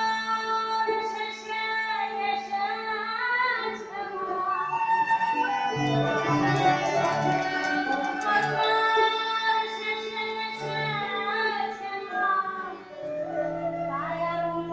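Live Baul devotional music: a harmonium holds a steady drone under a wavering melody line with bamboo flute, and tabla strokes join from about six seconds in.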